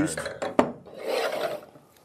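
A wine bottle set down on a wooden counter with one sharp knock about half a second in, then a short scraping rub as it slides across the wood.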